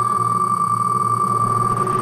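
Online spin-the-wheel app's tick sound while the wheel spins fast: the ticks come so quickly that they merge into one steady, high electronic tone.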